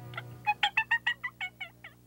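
Wild turkey calling: a rapid series of about a dozen short notes, each with a bent pitch, fading toward the end.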